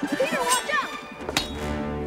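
Film soundtrack: excited voices, then one sharp smack about one and a half seconds in as a thrown ball of food hits. Music with held notes swells in after the hit.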